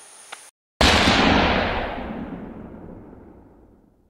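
Outro logo sound effect: a sudden loud hit about a second in, with a long tail that fades away slowly over about three seconds.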